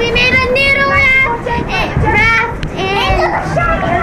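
Young girls' high-pitched voices, rising and falling in pitch without clear words.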